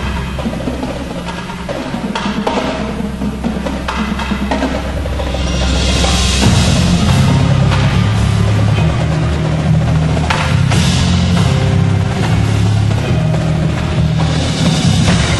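A high school percussion ensemble playing: drums and wood block over steady low notes. About five seconds in a bright swell builds, and from there the playing grows fuller and louder.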